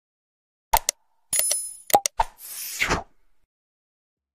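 Sound effects of a like-and-subscribe button animation: a couple of sharp mouse clicks, a bright ringing bell ding about 1.3 s in, two more clicks, and a short whoosh near the 3-second mark.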